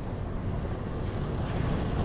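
Wind rumbling on the phone's microphone over a steady wash of sea on a rocky shore, slowly growing louder toward the end.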